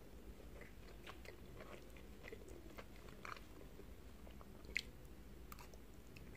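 Close-miked chewing of baked penne with melted mozzarella cheese: soft, wet mouth sounds broken by many small clicks. A single sharper click stands out a little before five seconds in.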